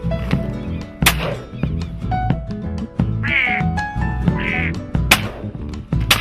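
Two shotgun shots, about a second in and again near the end, with two duck quacks between them, over background music.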